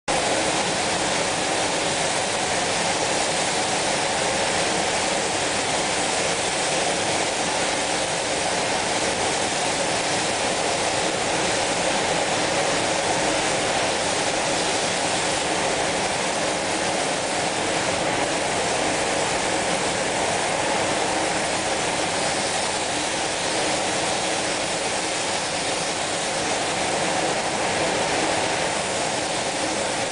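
Steady, unbroken rushing hiss of compressed-air spray guns spraying spray-chrome chemicals in a spray booth, with a faint steady hum beneath.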